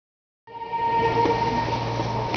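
A steady hum with several fixed pitches over a noisy background. It starts about half a second in.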